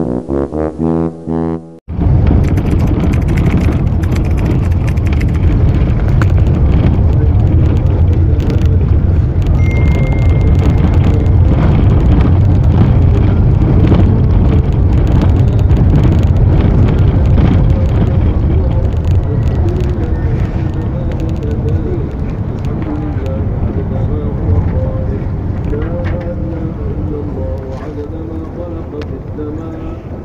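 A short electronic music sting cuts off about two seconds in. It gives way to a loud, steady low rumble of a moving vehicle with wind on the microphone. A voice comes in over the rumble in the second half.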